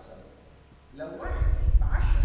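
A person's brief wordless vocal sound about a second in, rising in pitch, with a deep rumble under it.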